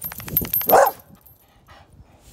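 English bull terrier barking once, loud and short, just under a second in, after a quick rattle of clicks.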